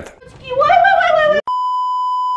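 A drawn-out, high-pitched exclamation in a person's voice, then a steady, high beep that cuts in sharply about halfway through and lasts about a second: a censor bleep laid over the footage's audio.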